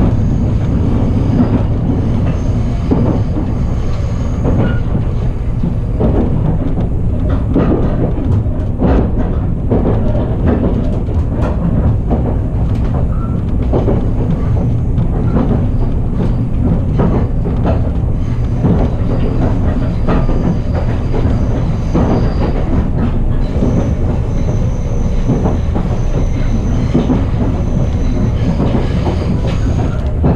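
Ride noise inside a passenger car of the Resort Shirakami train, an HB-E300 series hybrid railcar set, running along the line. It is a steady low rumble with frequent irregular clicks and knocks from the wheels on the track.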